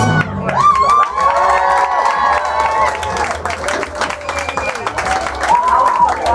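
Crowd cheering, whooping and clapping as a rock band finishes a song. The band's last chord stops right at the start, leaving shouts and claps.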